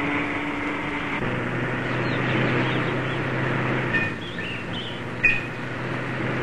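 A bus engine running with a steady hum as the bus approaches; the hum drops to a lower pitch about a second in.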